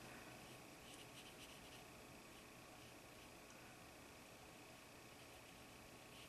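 Near silence: a paintbrush stroking watercolour paper, faint touches clustered about a second in and again near the end, over quiet room tone.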